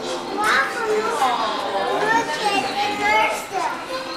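Children's voices calling out and chattering, high-pitched and excited, with no clear words.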